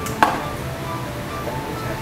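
Background music, with one sharp click a moment in as a metal pry tool works at the cracked edge of a OnePlus 7 Pro's curved screen glass.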